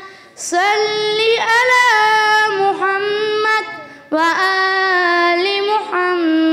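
A young girl's voice chanting Quranic recitation in long, ornamented held notes. There are breath pauses just after the start and about four seconds in.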